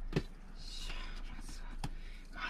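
Two light clicks of wooden chopsticks against an aluminium mess tin, one just after the start and one near the end, with a soft breathy hiss between them.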